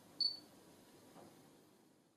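A Panasonic G80 camera gives one short, high-pitched beep just after the start, its autofocus confirmation that focus has locked.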